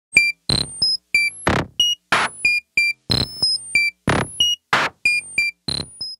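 Electronic intro jingle: short high synthesizer bleeps in a quick rhythm, alternating with short noise hits, in a pattern that repeats about once a second.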